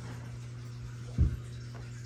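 A low steady hum, with one dull thump about a second in.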